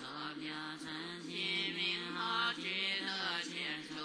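Buddhist scripture chanted in Chinese, the voice intoning on a nearly level pitch with long held notes and no pauses.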